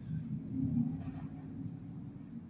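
Low, steady background rumble with a faint hum in a pause between speech.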